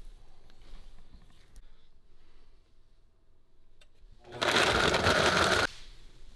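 A countertop blender running at high speed for just over a second, blending a protein smoothie, about four seconds in. Before it there are only faint clicks and rustles of handling.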